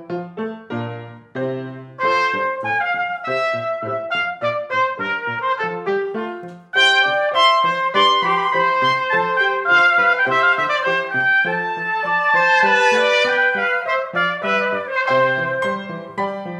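Baroque trumpet duet with grand piano: a piccolo trumpet and a high E-flat trumpet play over the piano accompaniment. The music gets markedly louder and brighter about seven seconds in.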